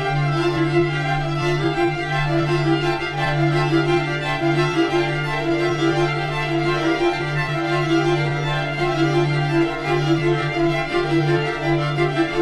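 A string orchestra of violins, cellos and double basses playing sustained held chords: a low note held throughout, with a middle-register note pulsing in short repeated swells above it.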